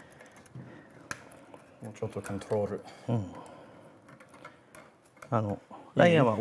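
Quiet, intermittent speech in short snatches, with scattered small clicks and ticks of metal tools being handled. The sharpest click comes about a second in.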